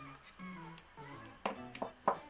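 Soft background music with two light clicks near the end, from a small gel polish bottle being handled and put down.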